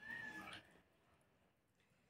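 Near silence. There is a faint, brief high-pitched call in the first half second, then dead quiet.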